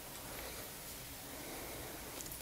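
Faint rustle of yarn and knitting needles as knitting continues, over a steady low room hum and hiss.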